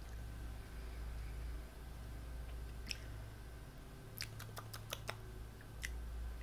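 A person chewing a mushroom with the mouth closed, a few sharp wet clicks from the mouth coming in a cluster in the second half, over a low steady hum.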